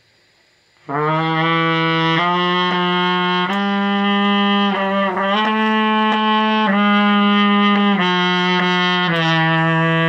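Trumpet played in its low register: a connected run of held notes stepping between neighbouring pitches of an F-sharp major scale study, starting about a second in.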